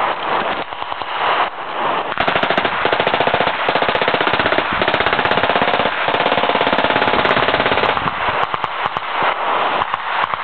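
KSP-58 light machine gun, the Swedish-built FN MAG, firing 7.62 NATO blank salute rounds on automatic. The fire settles into a rapid, even run of shots from about two seconds in until about eight seconds in, with a few very short breaks.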